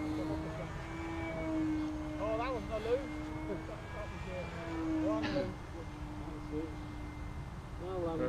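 Electric RC model plane's motor and propeller droning steadily as it flies overhead. Its pitch rises and falls a little as it manoeuvres.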